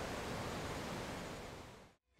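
Steady outdoor background rush with no clear events, fading out to silence near the end.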